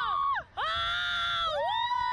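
Two women screaming on a thrill ride: a scream breaks off early, then one long, high held scream, then two voices screaming together in rising-and-falling arcs near the end.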